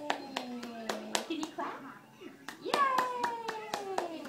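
Hands clapping, about three to four claps a second with a short pause in the middle. Over the clapping are two long, drawn-out calls from a voice, each falling in pitch; the second, near the end, is louder.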